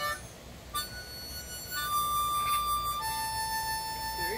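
Harmonica played in slow, long held notes. After a short pause near the start, a few sustained notes follow, each one lower than the last.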